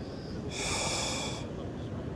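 A short hissing exhale of breath, just under a second long and starting about half a second in, from a man working a jig out of a small bass's mouth.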